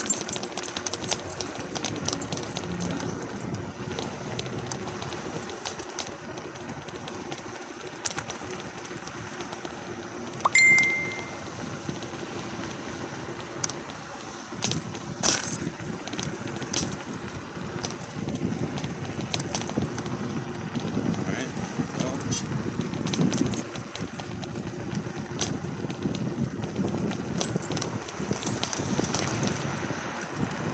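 Riding an MTRides SKRT electric scooter along a concrete sidewalk: steady wind and tyre noise with scattered clicks over the sidewalk joints, a faint steady hum, and road traffic alongside. A short, loud, high beep sounds about ten seconds in.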